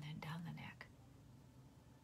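A woman's brief, quiet murmured utterance, under a second long at the start, then faint room tone.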